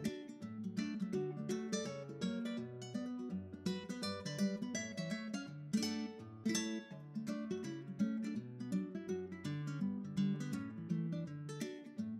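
Background music: an acoustic guitar playing a quick run of plucked notes.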